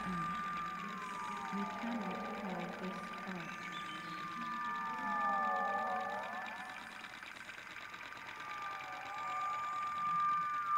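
Electroacoustic sound-art music: a steady high electronic tone held throughout, with clusters of gliding tones that swoop down and back up about every three seconds, like slow sirens.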